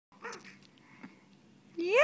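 Baby squealing: a loud, high vocal squeal starts near the end and rises in pitch. A brief small vocal sound comes near the start and a faint tap about a second in.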